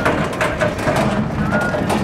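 Car engine and road noise heard from inside the cabin, a steady low rumble while the car drives slowly.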